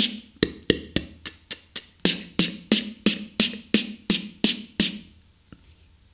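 Beatboxed 808 snare {T}: a forced, unaspirated tongue-tip ejective released against the alveolar ridge, repeated as a run of sharp, crisp hits about three a second, stopping about five seconds in.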